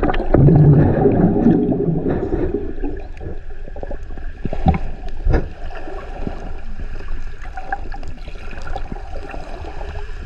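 Muffled underwater sound of shallow seawater picked up by a submerged camera: a low water rumble and gurgling, loudest for the first two or three seconds, then a steadier hiss with scattered faint clicks and ticks.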